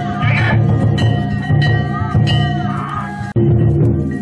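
Danjiri festival music: a dense rhythm of struck drum and metal gongs with a sustained ringing tone, with voices calling over it. It breaks off for an instant a little past three seconds, then resumes.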